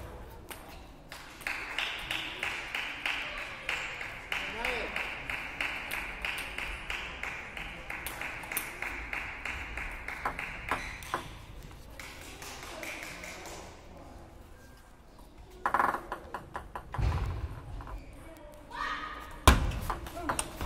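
Table tennis rally: the plastic ball clicking sharply off rubber paddles and the table in quick succession, with a few heavier thumps near the end from players' feet on the court floor.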